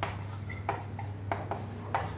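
Marker pen writing on a whiteboard: a run of short, faint scratchy strokes as letters and numbers are written.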